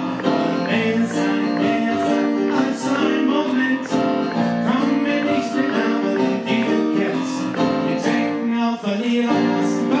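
Live music played on a digital stage piano: held chords over a regular beat.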